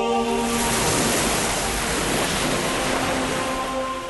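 A steady rush of wind and waves on open sea, swelling in just after the start, over soft held music chords.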